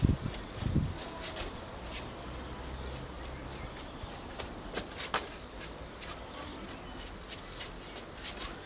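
Footsteps of trainers on a tiled floor as a person steps quickly through a footwork drill: a few low thumps in the first second, then scattered light taps and scuffs.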